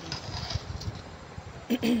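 Metal spoon stirring rice through water in an aluminium pot on a gas stove, over a steady low rumble.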